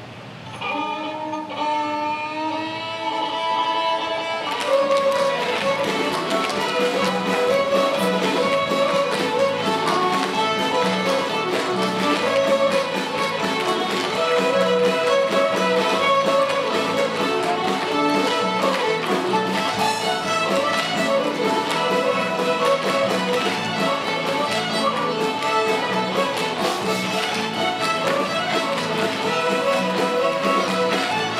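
A large fiddle ensemble, backed by guitar and cello, playing a traditional fiddle tune. A few held, sliding fiddle notes open it, and the full group comes in about four seconds in with a steady beat.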